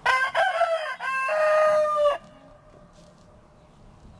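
A rooster crowing once: a cock-a-doodle-doo of about two seconds, broken into short notes and ending in a long held note that cuts off.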